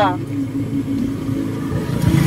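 A motor vehicle's engine running steadily, a low even hum.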